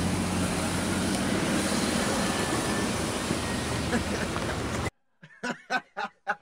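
A car on the move: an engine note dips and rises at the start under a steady rush of road and wind noise, which cuts off suddenly near the end.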